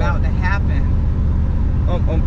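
Supercharged G-body Oldsmobile Cutlass driving at a steady pace, its engine a low, even drone heard from inside the cabin.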